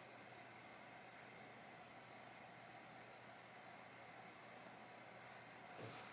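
Near silence: steady room tone with a faint, even hiss.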